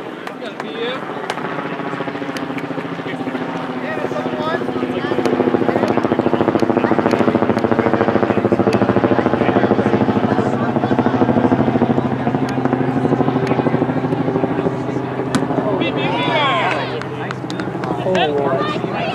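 A helicopter passing overhead: a steady, rhythmic rotor drone that swells about six seconds in and fades near the end. Distant shouted voices come in near the end.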